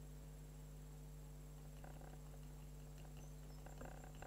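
Near silence: a steady low electrical hum, with a few faint soft taps in the second half.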